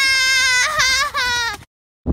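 A boy's long, loud wailing cry, held on one slowly falling pitch and then breaking into a few wavering sobs, cut off abruptly about a second and a half in.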